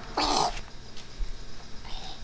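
A short, strained vocal cry from a person, about half a second long and loud, followed by a fainter one near the end.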